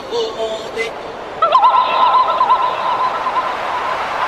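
A tribal dance-music mix in a break without drums. A short pitched phrase fades out, then a warbling high call with a wavering pitch comes in about one and a half seconds in and holds for about two seconds.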